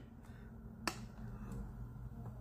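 A single sharp, short click a little under a second in, over faint steady room hum.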